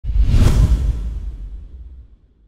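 A logo-reveal whoosh sound effect: a rushing swell that peaks about half a second in over a deep low rumble, then fades away.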